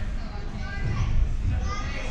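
A crowd of spectators, many of them children, chattering and calling out together over a steady low rumble.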